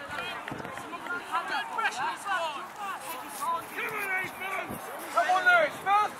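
Several voices calling and shouting across a rugby pitch, overlapping one another, with louder shouts near the end.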